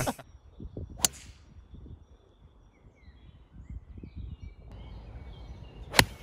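Outdoor ambience with faint bird chirps and low wind rumble, a sharp click about a second in, then near the end a sharp crack as a golf iron strikes the ball off fairway turf.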